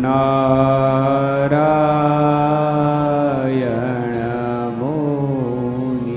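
A man's voice chanting a devotional dhun in long drawn-out notes, over a steady low drone. The first note is held for about three and a half seconds, then the pitch slides down and back up before the next held note.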